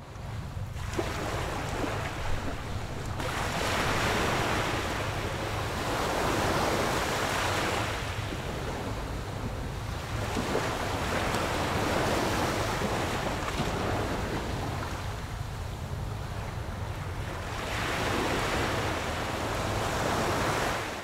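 Water washing onto a stony shore, rising and falling in slow swells every several seconds, with a steady low rumble of wind on the microphone.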